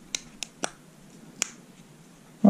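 Plastic phone case clicking onto a smartphone as it is pressed into place: four sharp snaps, three close together in the first second and one more just under a second and a half in.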